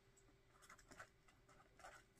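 Near silence with faint, short scratches of a pen writing numbers on paper.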